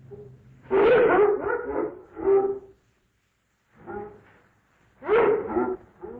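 Hanna-Barbera zoo ambience sound effect: a string of animal calls and cries in short bursts. The loudest comes about a second in, and there is a pause of about a second near the middle.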